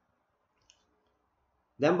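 Near silence with one short, faint click less than a second in, then a man's voice starts speaking near the end.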